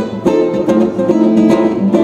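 Classical guitar strummed on its own, several chord strokes ringing on.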